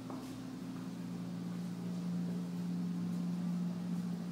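Room tone: a steady low mechanical hum over faint hiss, growing a little stronger about a second and a half in.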